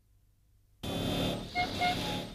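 Silence for most of the first second, then street traffic noise with two short car-horn toots in quick succession.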